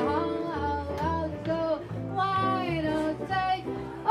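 Live jazz: a woman singing a melody with held, gliding notes, accompanied by an archtop electric guitar and a plucked upright bass.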